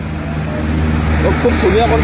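Motor vehicle traffic: a vehicle's noise swells over the first second or so above a steady low rumble. A man's voice comes in about a second in.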